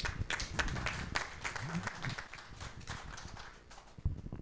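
Audience applauding, the clapping fairly quiet and thinning out toward the end.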